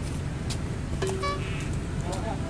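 Outdoor urban ambience: a steady low rumble of distant traffic, with a brief tone about a second in.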